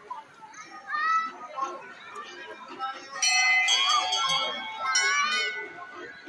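Crowd of people and children talking and calling out, with a temple bell ringing for about a second and a half around three seconds in.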